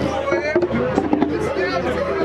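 Several voices singing a Vodou ceremonial song together, with drum strikes in the middle.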